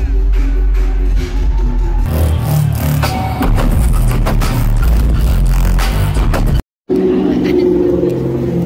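Live dubstep DJ set played very loud over a concert sound system, heavy bass filling the mix, recorded from among the crowd. The sound jumps once about two seconds in, cuts out briefly near the end, and gives way to people talking outside on a street.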